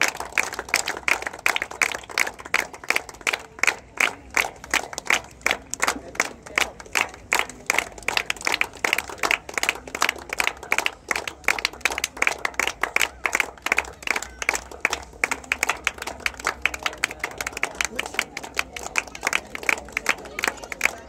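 A small group of people clapping by hand, a steady run of sharp claps with no break.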